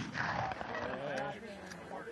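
A rifle shot dying away at the start, its blast not setting off the explosive charge, followed by faint talk among the onlookers.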